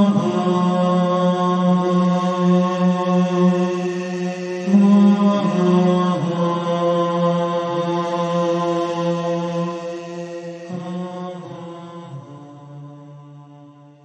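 Slow vocal chant of long held notes, the pitch stepping to a new note every few seconds, gradually fading out near the end.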